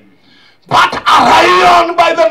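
A man's loud, drawn-out shout into a microphone, starting after a short pause and held for over a second: a preacher's impassioned exclamation mid-sermon.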